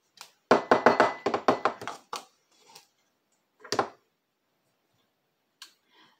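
A plastic measuring scoop digging, scraping and tapping in a canister of powdered slime mix: a quick run of about ten scrapes and taps lasting about a second and a half, then a single knock a couple of seconds later.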